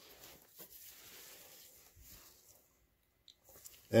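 Faint hand-handling noises from work on the engine's valve gear: a few small clicks and light rustling.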